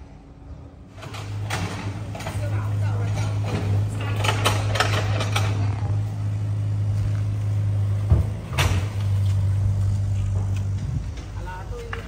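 Small tracked excavator's engine running with a steady low hum, with clatter from the digging and two sharp knocks about two-thirds of the way in.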